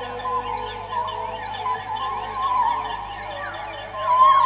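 Experimental electronic music: a wavering held tone under many short, repeated falling glides.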